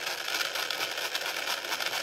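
Small 300 RPM geared DC motor running steadily near its maximum speed setting, a steady whir with a hiss.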